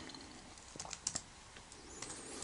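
Faint typing on a laptop keyboard: a few quick keystrokes in the middle, entering a command in a terminal.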